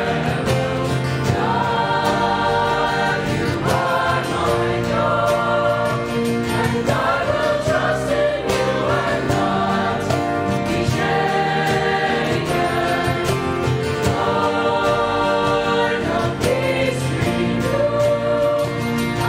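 A mixed-voice student choir singing a worship song into handheld microphones, a continuous sung melody with no break.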